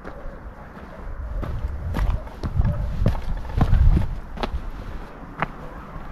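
Footsteps crunching on a stony dirt path, a string of separate steps, with a heavy low rumble on the microphone about halfway through.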